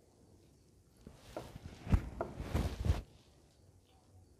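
Someone chewing a mouthful of stewed chicken gizzard: quiet, irregular mouth noises with a few soft thumps, starting about a second in and lasting about two seconds.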